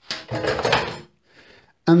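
A clatter of kitchen things being handled, lasting about a second, with a little metallic ringing in it.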